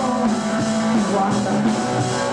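Live rock trio playing with electric guitar, bass guitar and drum kit, loud and steady, in a stretch with no singing.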